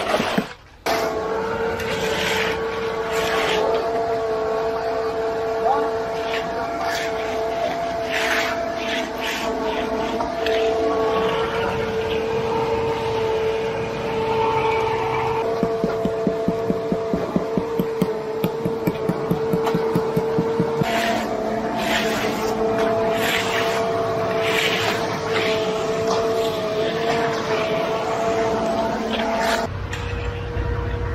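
Concrete conveyor truck running steadily, its engine and belt making an even-pitched drone. Scattered scrapes and knocks come from a rake and a hand edger working wet concrete, with a quick run of regular knocks about halfway through.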